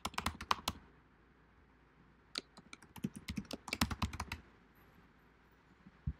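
Typing on a computer keyboard in two bursts of keystrokes, a short one at the start and a longer one from about two and a half to four and a half seconds in.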